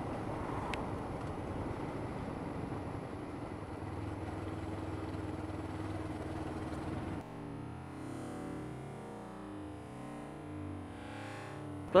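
Motorcycle engine running steadily under wind and road noise on a helmet-mounted camera. About seven seconds in, the sound drops suddenly to a quieter, warbling, garbled noise.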